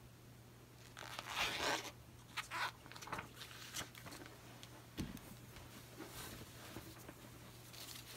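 Irregular crinkling and rustling of plastic or tape being handled, loudest about a second and a half in, then a few smaller rustles. A faint steady hum runs underneath.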